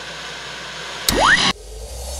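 Television static hiss, then about a second in a louder rising sweep that cuts off suddenly, as the screen switches over.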